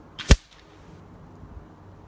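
A single shot from a .30 calibre Rapid Air Weapons PCP air rifle: one sharp crack, with a fainter tick a split second before it.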